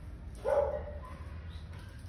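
A single short dog bark about half a second in, over a steady low rumble.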